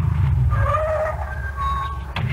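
Sound effect of a car engine running, a low rumble that fades off, with a few faint high steady tones over it in the second half.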